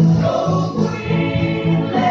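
Mixed church choir of men and women singing in harmony, several voice parts holding sustained notes that change together every half second or so.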